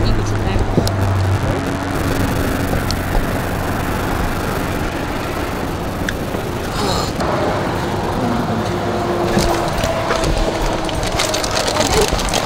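Steady rush of road traffic noise, with a faint low hum in the first second or so.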